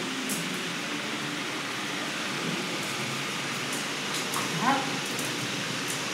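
Steady hiss throughout, with faint low murmuring and a few faint clicks. A person's short rising exclamation, 'Ah!', comes about four and a half seconds in.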